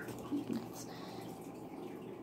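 Quiet room tone with two short, soft sounds about half a second in.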